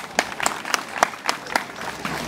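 Audience clapping together in a quick, steady rhythm, about four claps a second.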